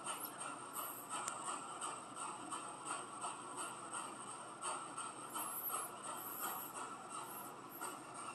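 Steady, choppy static hiss from a ghost-hunting 'black box' spirit device, with no clear voice in it.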